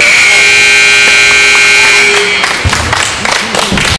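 Gym scoreboard buzzer sounding one long steady tone for about two seconds, cutting off sharply as the game clock runs out.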